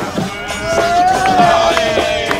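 One long held note, rising slightly in pitch and then falling, sustained for about a second and a half over busier background sound.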